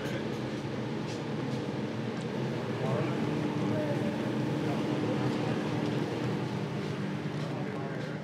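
Steady rushing hum of a commercial kitchen extraction hood and gas range, with a pan of seafood casserole sauce reducing on the burner. A steadier hum tone joins about three seconds in.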